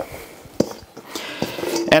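Diced cheddar cubes poured from a stainless steel bowl into a plastic tub of ground sausage meat: light clicks and a soft sliding rustle of the cubes, with one sharp tap about half a second in.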